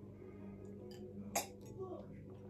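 A person quietly sipping a drink from a glass, with one short click about one and a half seconds in, over a faint steady hum.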